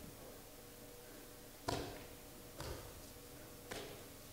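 Three short, sharp sounds from performers moving and grappling on a stage, the first, about two seconds in, the loudest, over a low steady room hum.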